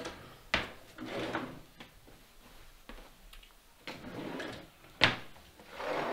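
Wooden drawer being rummaged through by hand: two sharp wooden knocks, about half a second in and, loudest, about five seconds in, between stretches of rustling as the drawer's contents are rifled.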